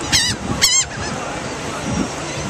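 Two short, wavering calls from laughing gulls, about half a second apart, near the start.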